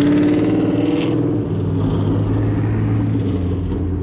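A sports car engine running loud as the car drives past on the street: a steady low engine drone, loudest at first and easing a little after about a second.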